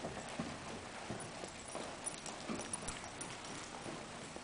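A horse's hooves beating on the soft dirt-and-sand footing of an indoor arena as it trots, a faint, steady run of soft thuds.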